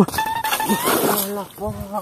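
A person's voice: a long, high-pitched drawn-out vocal sound, then shorter, lower vocal sounds near the end.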